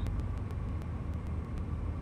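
Steady low background hum and rumble, with a few faint ticks.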